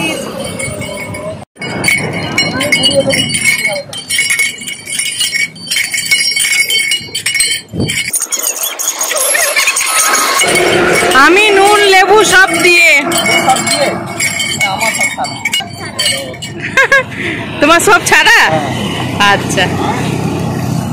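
Hand-cranked sugarcane juice crusher being turned, its metal wheel and gears clinking and jingling, with a few steady high ringing tones in the first half. People talk over it.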